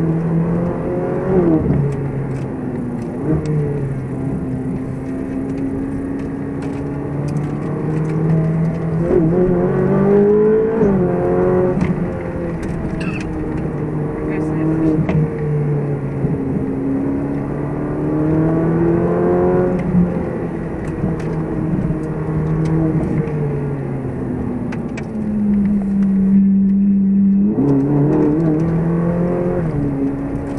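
Ferrari 458 Speciale's V8 engine heard from inside the cabin, revving up and dropping back again and again as the car accelerates and changes gear. Its pitch climbs and falls every few seconds, holding a steadier lower note briefly near the end before rising again.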